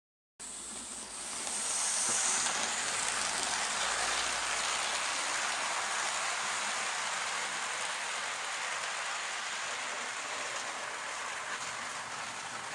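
00 gauge model train running along the layout's track: a steady rushing rolling noise that swells a little over the first two seconds and then holds even.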